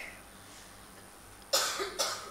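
A man's single short cough about a second and a half in, after a stretch of low room tone.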